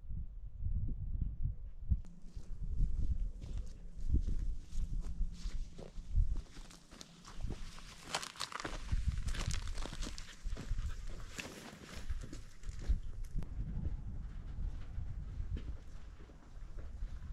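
Footsteps crunching irregularly over gravelly dirt and sandstone, with a steady low rumble of wind on the microphone.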